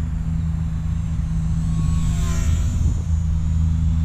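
Eachine P-51 Mustang micro RC plane's small electric motor and propeller whining during a fast, low pass, the pitch falling as it goes by about two seconds in. A steady low rumble runs underneath.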